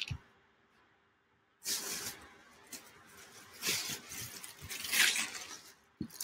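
Plastic air-pillow packing cushions crinkling and rustling as they are carried and handled, in irregular bursts from about two seconds in. There is a brief knock at the very start.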